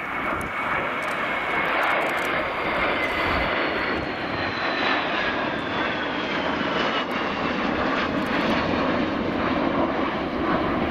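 Three Panavia Tornado jets, each with two RB199 turbofans, flying past in formation: loud, steady jet noise. A high engine whine falls in pitch over the first five seconds or so as the formation goes by.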